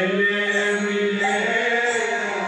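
Devotional kirtan chanting, the voice holding one long steady note.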